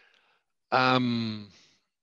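A person's drawn-out wordless hesitation sound, an 'ehh' or 'mmm' lasting under a second and falling in pitch.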